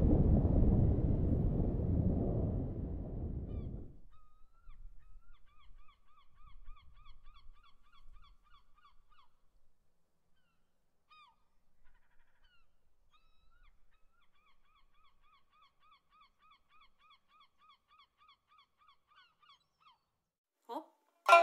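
Deep rumble of churning sea water that fades out about four seconds in. Then birds call faintly in two long runs of rapidly repeated notes, about four a second, with a few single calls between.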